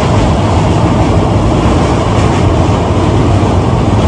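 A passenger train running over a steel truss bridge, heard at an open carriage window: loud, steady running noise.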